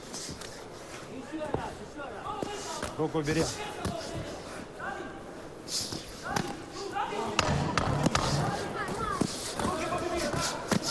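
Boxing gloves landing punches, a string of sharp smacks that come more often in the second half, over shouting from the crowd and corners that grows louder toward the end.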